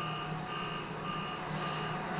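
Sound from a TV episode playing in the background: a steady low hum under a high electronic tone that keeps switching on and off, like beeping.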